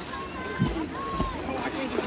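A swimmer's strokes splashing in pool water close by, with two low splashing thuds about half a second apart, over faint distant voices.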